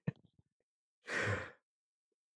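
A person's sigh: one short, breathy exhale about a second in, just after the last of a laugh fades.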